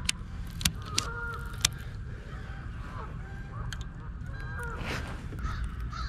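Geese honking a few times in the distance, short arching calls scattered through the stretch. A few sharp clicks come in the first two seconds, from handling gear in the kayak.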